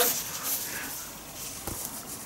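Faint rustling of a soft cotton towel being handled, with one light click near the end.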